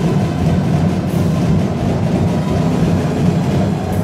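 Sinulog drum ensemble playing a loud, dense, continuous rolling rumble with no clear beat.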